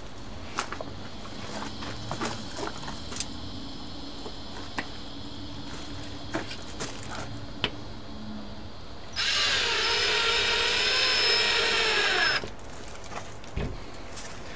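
Cordless drill driving a screw through a small wooden block into a wooden window sill. The motor runs steadily for about three seconds, its pitch sagging near the end as the screw drives home, then stops. Before it come light clicks and knocks of the block and drill being handled.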